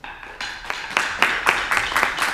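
A small group of people clapping, starting about half a second in and growing louder.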